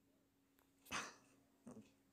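Near silence in a pause of speech, broken about a second in by a person's short breath, with a fainter mouth sound shortly after; a faint steady hum underneath.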